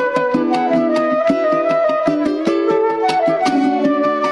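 Transverse flute playing a gaita zuliana melody in held, stepping notes over a Venezuelan cuatro strummed in a steady, even rhythm.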